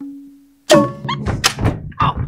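Burmese hsaing waing ensemble: a held note with quick clapper ticks, about five a second, fades out. After a short gap comes a sudden loud hit of drums and gongs, then a few more decaying strikes.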